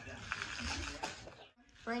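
A husky working a plush dog toy with its muzzle and paws: scratchy rustling of fabric and stuffing. A brief near-silence about a second and a half in is followed by a short voiced sound near the end.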